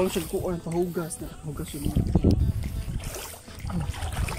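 People talking in the dark, over a low sloshing of shallow water underfoot.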